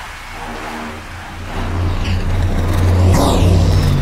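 Dubstep electronic music: a heavy, rumbling synth bass swells up from about halfway in, with a bright sweeping effect about three seconds in and a falling pitched bass line near the end.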